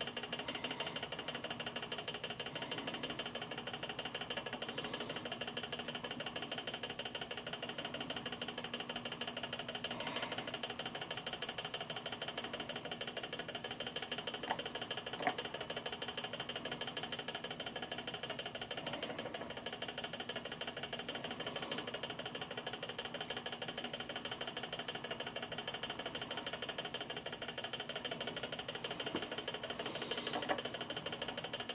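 Magnetic stirrer's motor humming steadily while it mixes a sodium hydroxide solution, with a few light clicks of a paintbrush against a small glass beaker, once about four seconds in and twice around fifteen seconds.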